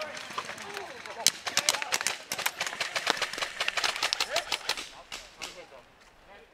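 Airsoft guns firing, a dense, irregular run of sharp snapping shots several a second, with voices among them. The loudest shot comes just over a second in, and the firing fades out near the end.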